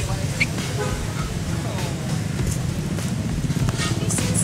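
City street ambience: motorbike and car traffic running steadily, with people talking in the background.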